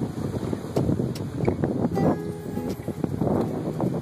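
Jet boat under way: the engine runs steadily amid rushing water, with wind buffeting the microphone. Music plays faintly underneath.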